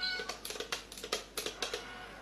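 A short high meow, then a quick run of about eight light taps and clicks as a cat paws at a small box toy.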